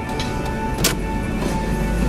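Road and engine noise inside a moving car's cabin: a steady low rumble that grows a little louder near the end, with a thin steady whine and one short click a little under a second in.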